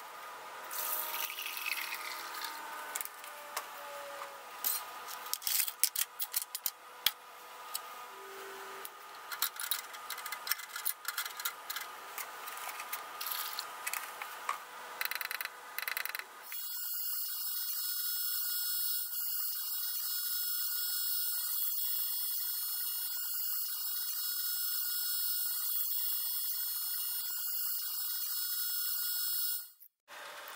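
Digital ultrasonic cleaner. First come irregular clicks and knocks as it is handled and set up. About halfway it is switched on and runs with a steady, high-pitched hiss and buzz from the liquid-filled tank, then stops abruptly just before the end.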